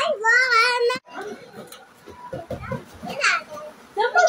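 Young children's high-pitched voices: a child calls out for about the first second, then it is quieter, with another short call a little after three seconds in.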